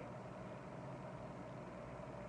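Steady low hum and hiss of a hotel room's through-wall air-conditioner unit running, with a faint steady tone over it.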